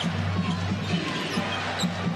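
Basketball being dribbled on a hardwood arena court, low thuds about three times a second, over arena crowd noise and a steady low hum.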